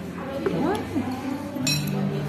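A single short, bright clink of tableware about three-quarters of the way in, over background music and voices in a busy room.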